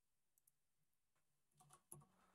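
Near silence with a few faint clicks: two short ones about half a second in and a small cluster near the end.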